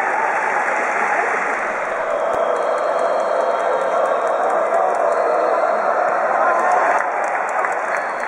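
Baseball stadium crowd clapping and cheering: a dense, steady din of many voices and hands.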